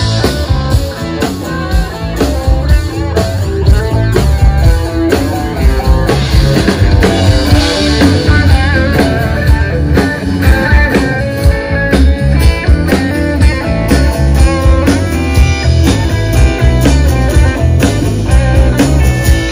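Live rock band playing an instrumental break of a blues-rock song: electric guitar lead over steady drum kit, bass guitar and strummed acoustic guitar, with no vocals.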